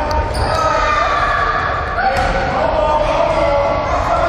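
Children's voices shouting and calling out, with drawn-out high calls, over running footsteps on a wooden gym floor, echoing in a large hall.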